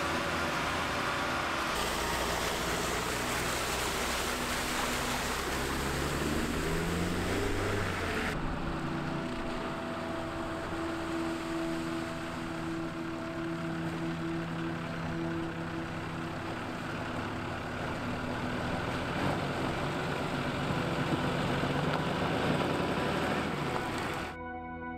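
Military cargo truck's engine running steadily, with the engine note rising and falling for a few seconds, heard first from the canvas-covered cargo bed and then from the road as the truck drives along.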